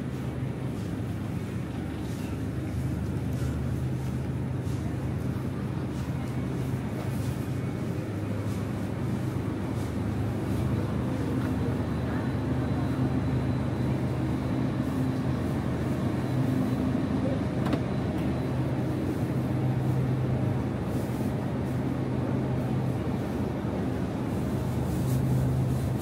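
Steady low hum and rumble of a store's refrigerated display cases, swelling and easing a little, with a few faint clicks.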